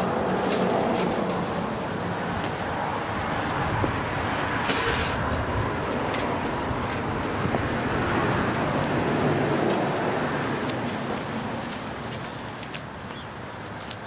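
Steady road traffic noise from a nearby street, easing slightly near the end, with a brief sharp noise about five seconds in.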